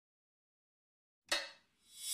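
Dead silence for over a second, then a short, faint burst of noise about a second and a quarter in. Near the end a sound begins to swell up as an electronic dance track starts.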